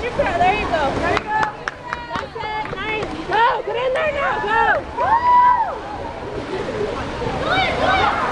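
Several voices shouting and calling out over each other in long, rising-and-falling yells, over a bed of water splashing from swimmers, with a few sharp clicks between about one and three seconds in.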